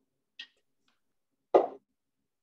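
Two handling sounds: a light click, then about a second later a louder knock.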